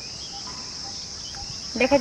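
Steady, high-pitched chirring of insects such as crickets, a continuous background drone. A woman's voice starts again near the end.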